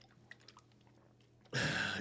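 A few faint clicks from a plastic water bottle being handled, then a sudden half-second burst of loud hiss near the end.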